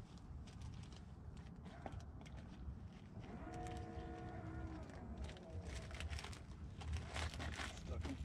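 Low wind rumble on the microphone, with one long, steady moo from a distant cow about three and a half seconds in, lasting about a second and a half. A few faint clicks near the end.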